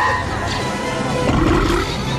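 Orchestral film score over the roar of the Sarlacc, the tentacled creature in the sand pit.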